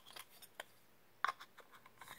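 Thin clear plastic snow-globe parts handled in the hands, giving a few short plastic clicks and taps. The loudest comes about a second and a quarter in.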